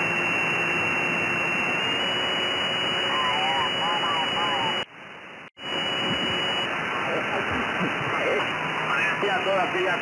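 Receiver audio from an Anan 8000DLE software-defined radio in upper sideband on the 20-metre band, retuned a little as it plays: a steady hiss of band noise with a thin high whistle and faint, garbled voices of distant stations. The audio drops out for about half a second midway through.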